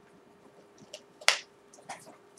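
A sharp click a little over a second in, the loudest sound, with fainter clicks just before it and near the end, over a faint steady hum.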